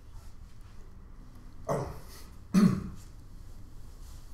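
A man clearing his throat twice, a little under a second apart, each short sound falling in pitch; the second is the louder.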